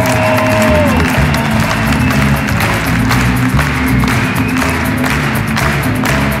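Live band of piano, guitar and drums playing an instrumental passage of a pop song, with the audience applauding over it. A held note falls away about a second in.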